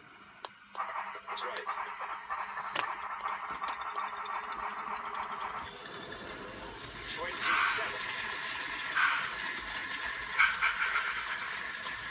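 OO gauge model diesel locomotive running past at close range, its motor and wheels making a steady whirring rattle that starts about a second in. A television voice talks faintly behind it.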